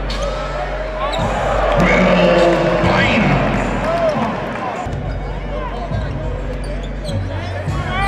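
Basketball game sound: a ball bouncing and sneakers squeaking on a hardwood court, with short repeated squeaks and a louder stretch about two seconds in. Music with a steady bass runs underneath.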